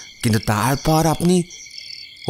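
Crickets chirping steadily as a night-time ambience, with a man's voice speaking for the first second and a half.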